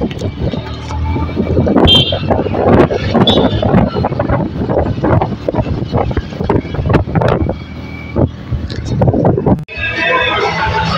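Moving-vehicle road and wind noise mixed with music. Both cut off suddenly near the end.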